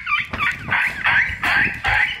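A dog whining and yipping: a run of short, high, sliding cries.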